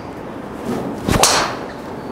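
Golf driver (Callaway Ai Smoke Max D) hitting a ball off a range mat about a second in: a short swish of the swing, then one sharp crack at impact that rings briefly. It is a well-struck shot.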